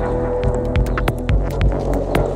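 A steady low droning hum with an irregular throbbing pulse, overlaid by scattered sharp clicks that come more often after about half a second, like an ambient sound-design track.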